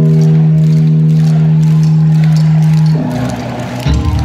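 Live band music over an arena PA: one loud held note with its overtones, steady for about three seconds, then dropping back to a quieter, busier passage near the end.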